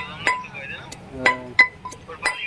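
Repeated sharp metallic clinks, each with a brief ring, from a knife blade striking in quick, uneven blows, a few a second.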